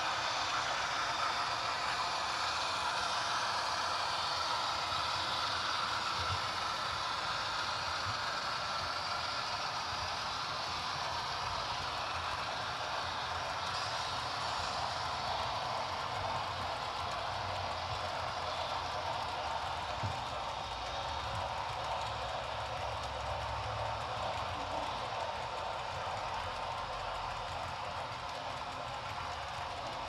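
HO scale model freight train rolling past: a steady whirring rattle of many small metal wheels on the track as a long string of tank cars goes by, gradually getting quieter.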